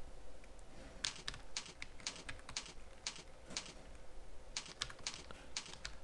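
Faint computer keyboard typing: scattered key clicks in short, irregular runs, starting about a second in.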